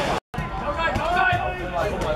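Voices talking on the sideline of a football match. The sound drops out to silence for a moment just after the start, at a cut between clips, then the talking resumes.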